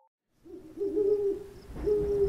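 Owl hooting in a night ambience sound effect, starting after a brief silence: one hoot about a second in and another near the end, with crickets chirping.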